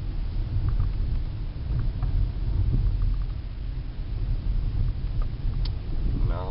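Car interior noise while driving: a steady low rumble of engine and road, with a few faint clicks.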